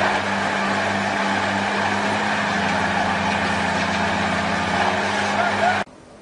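Heavy truck engine running steadily at a constant pitch, with faint voices in the background. The sound cuts off suddenly near the end.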